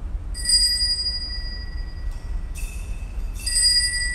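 Altar (sanctus) bells rung several times, each shake a bright, high, lingering ring, marking the elevation of the consecrated host.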